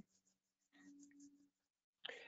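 Near silence: a pause in speech with faint room tone and a low hum.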